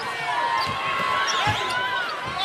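Basketball dribbled on a hardwood court, with low thumps of the ball, the clearest about one and a half seconds in, over the steady noise of an arena crowd.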